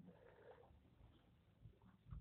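Near silence: faint room tone with a barely audible soft sound about half a second in.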